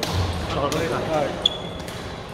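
Reverberant badminton hall: a few sharp knocks of shuttlecocks being struck by rackets, with indistinct voices chattering. A brief high squeak comes about a second and a half in.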